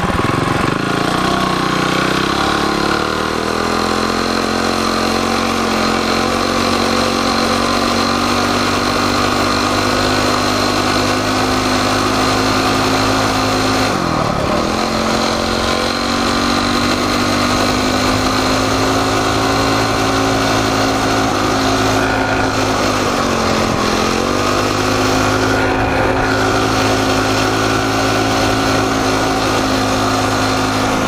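Coleman CT200U-EX minibike's single-cylinder four-stroke engine pulling the bike along through its torque converter, geared to 6.66:1 with a 9-tooth jackshaft and 60-tooth rear sprocket. Its pitch climbs over the first few seconds as it gets up to speed, then holds steady, dipping briefly and picking back up about halfway through and again about three quarters through.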